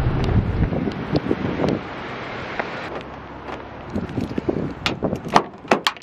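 Wind buffeting the microphone, heaviest in the first second, over footsteps on concrete pavement. A few sharp clicks and knocks come in the last two seconds, as a car door is reached and opened.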